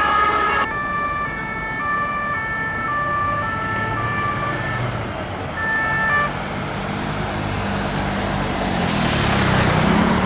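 French police two-tone siren, a high and a low note alternating, stopping about five seconds in with a brief return near six seconds. Then street traffic with vehicle engines, growing louder toward the end.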